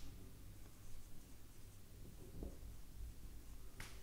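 Felt-tip marker writing on a whiteboard: a few faint, short squeaky strokes, with a sharper stroke near the end, over a low steady room hum.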